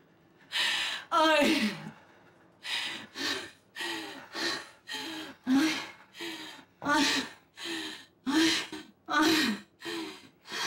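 A woman sobbing and gasping in distress: a string of short, crying breaths, about one to two a second, starting about half a second in. The first couple are louder wails that slide down in pitch.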